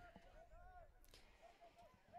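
Near silence, with faint distant voices calling out.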